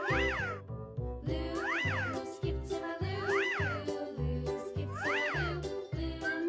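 Children's background music with a steady beat, with a meow-like cry that rises and falls in pitch four times, about every second and a half.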